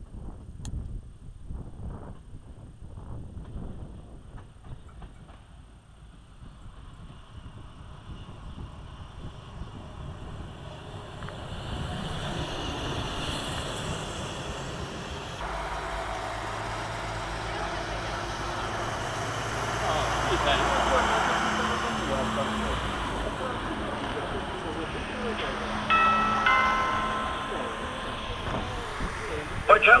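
Diesel multiple unit 222M-001 running into the station and starting to shunt, its engine rumble and running noise building up about halfway through and loudest about two-thirds in. Wind on the microphone early on, and a few short high tones shortly before a station announcement begins at the end.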